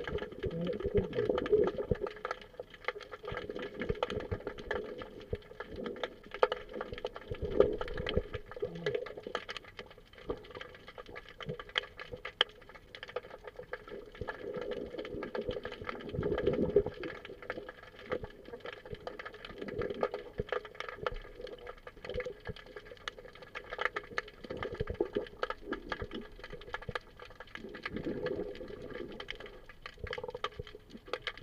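Underwater sound heard through a camera's waterproof housing: muffled water movement with many scattered crackling clicks over a faint steady hum, and a louder rushing swell every few seconds.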